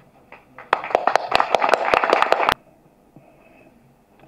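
A short burst of audience applause, many hands clapping, which starts about a second in and cuts off suddenly after under two seconds.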